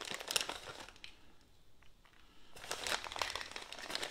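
Plastic bag of pre-shredded cheese crinkling as a hand digs into it for pinches of cheese. Two bouts of crinkling with a quieter stretch of about a second and a half between them.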